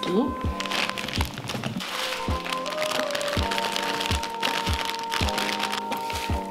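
Background music with a steady beat over the crinkling of a plastic bag and the rustle of kale leaves as the bagged kale is tipped into a bowl.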